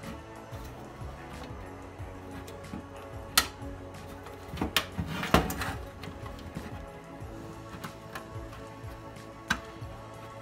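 Background music throughout, with several sharp metallic clicks and knocks, the loudest a little past the middle, as the rusty pressed-steel shell of a toy camper is pressed and seated onto its base.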